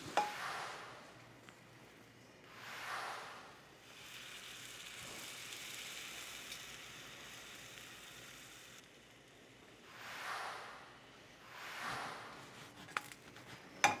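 Crepe batter sizzling in a hot nonstick pan, in soft swells that rise and fade over about a second each, with a steadier stretch of sizzle in the middle.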